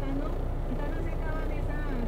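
Truck's diesel engine running steadily, heard from inside the cab while rolling slowly along a dirt road.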